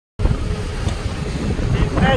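Wind buffeting the microphone over a steady low rumble, cutting in after a split second of silence.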